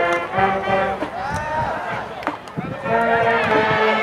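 Brass band music playing held chords, with voices shouting over it and one sharp knock about two seconds in.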